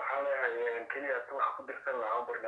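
Speech: a person talking steadily, the voice thin and narrow as over a phone line.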